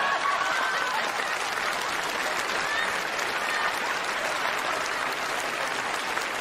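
Audience applauding, with laughter mixed in at the start, then steady clapping.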